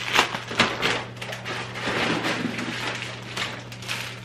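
Crinkling and rustling of plastic instant-noodle packets and grocery bags as items are pulled out and handled, in irregular bursts.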